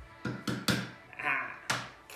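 Wooden spatula handle striking the top of an aluminium Coca-Cola can: four sharp taps, three in quick succession in the first second and one more near the end.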